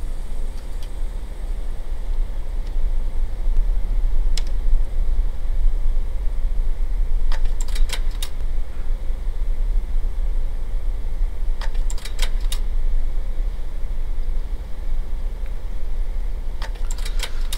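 A steady low hum, with a single click about four seconds in and short clusters of sharp clicks and rattles near eight and near twelve seconds, as an old film projector is handled and switched on.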